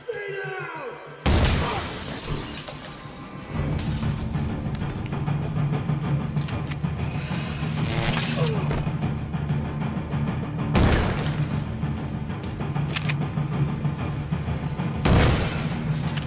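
Film soundtrack: a sudden loud crash of shattering glass with a bang about a second in, then ongoing clatter over a low, steady droning score, with further sharp loud gunshot-like impacts near eleven and fifteen seconds.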